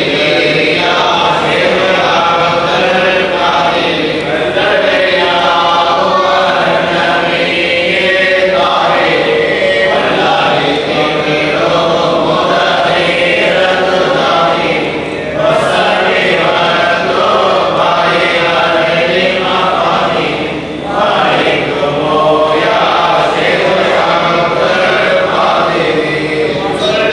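A group of men and boys chanting a baith, an Islamic devotional song, together, with brief breaks about fifteen and twenty-one seconds in.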